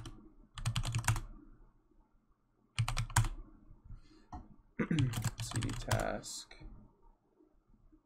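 Computer keyboard being typed on in three short runs of keystrokes, with brief pauses between them.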